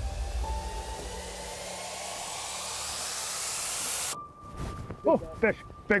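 A soundtrack riser: a swelling whoosh of noise with a few held tones builds for about four seconds, then cuts off abruptly. A man then starts shouting excitedly, "Big fish!", over a faint held tone.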